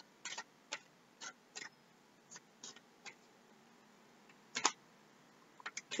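Oracle cards being shuffled by hand: soft, irregular clicks and taps as the cards slide and knock together, with one louder snap about three-quarters of the way in.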